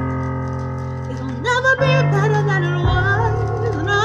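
A woman singing a ballad solo over an instrumental backing track of held chords. The chords change about two and three seconds in, and her voice enters about a second and a half in with vibrato.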